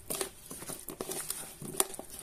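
Raw potato slices coated in oil and spices being tossed in a bowl with a plastic spoon: a soft, wet shuffling with scattered clicks of the spoon against the bowl, the sharpest near the end.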